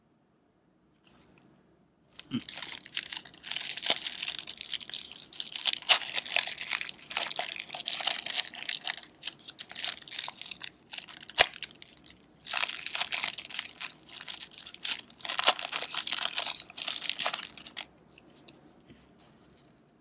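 A 1990 Score football card pack's wrapper being torn open and crinkled by hand. The crackling comes in two long spells with a short break between them, and there is one sharp click about halfway.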